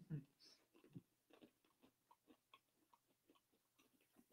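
Near silence, with faint irregular crunching clicks from people chewing sugar-coated roasted almonds.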